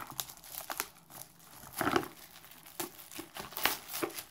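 Crinkling and rustling of packaging as a cardboard beauty box is handled, in irregular crackles with louder rustles about two seconds in and again near the end.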